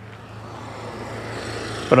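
A motor scooter approaching and passing close by, its engine and tyre noise growing steadily louder.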